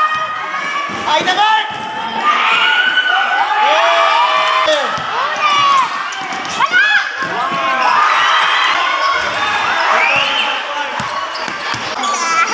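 A basketball dribbled on the court during a fast break, under spectators shouting and cheering throughout.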